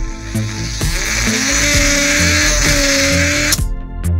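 Small brushed DC toy motor whirring at high speed over background music: it spins up about a second in, with a rising whine that settles into a steady pitch, then cuts off abruptly near the end.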